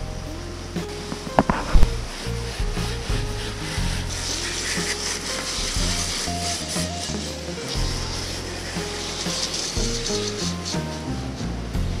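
Background music with a stepping bass line, over the steady hiss of a garden hose spray nozzle washing sand off a fishing rod transporter; the spray is loudest in the middle. A couple of sharp knocks sound about a second and a half in.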